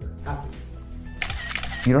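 A quick run of camera shutter clicks a little over a second in, over steady background music.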